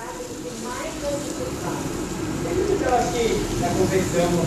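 Crushed chocolate malt poured from a bucket into a mash vessel of dark wort: a steady rushing hiss that grows louder. A faint voice runs underneath.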